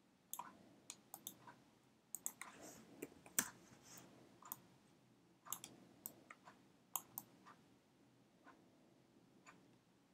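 Faint, irregular computer mouse clicks, a dozen or more, bunched most densely between about two and four seconds in, over low room noise.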